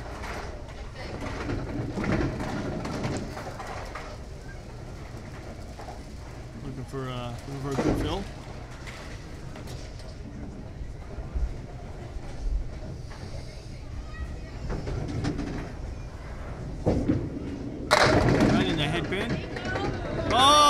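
Candlepin bowling alley with quiet background voices. Near the end a thrown ball hits the rack and the wooden candlepins clatter down in a sudden loud crash, a strike.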